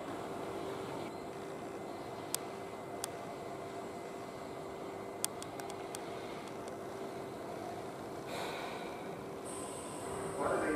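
Standing Tobu 10000 series electric train idling: a steady hum with one constant low tone, broken by a few sharp ticks about two, three and five seconds in. The noise grows a little from about eight seconds in.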